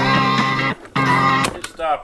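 A rock song with guitar playing from a cassette through the Sanyo M7130K boombox's speakers, its tape speed just set by ear at the motor's adjustment screw. The music stops suddenly about one and a half seconds in, followed by a couple of sharp clicks.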